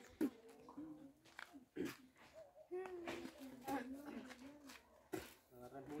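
Faint, muffled voice sounds with a few soft clicks, without clear words.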